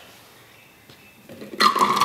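3D-printed plastic cage being slid down into the plastic curing tower, a rough plastic-on-plastic rubbing that starts about one and a half seconds in after a quiet first second.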